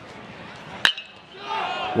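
Metal baseball bat hitting a pitched ball about a second in: one sharp crack with a brief metallic ping, over faint crowd noise.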